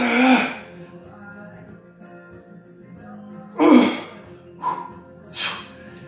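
A man grunting and breathing out hard with the strain of lifting 50-pound dumbbells, with one loud grunt at the start, another about three and a half seconds in, then shorter sharp breaths. Background music plays throughout.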